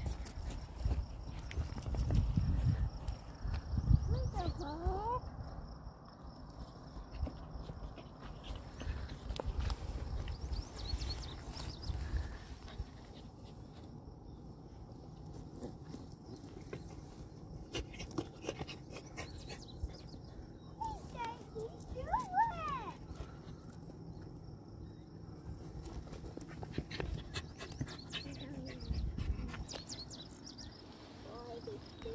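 Outdoor ambience with wind rumbling on the microphone in the first few seconds, and a few short, high, gliding calls about four seconds in and again a little past twenty seconds.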